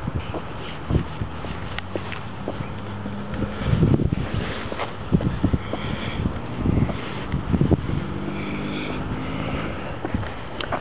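Wind and handling noise on a handheld microphone while walking, with irregular low bumps, and a low steady engine-like hum of a vehicle that comes and goes in the background.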